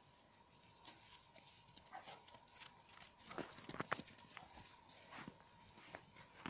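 Irregular soft crunching steps in packed snow, a few scattered at first and then bunching together about three to four seconds in.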